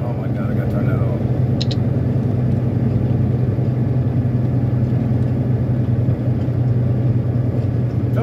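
Semi truck's diesel engine and road noise heard inside the cab while cruising, a steady low drone.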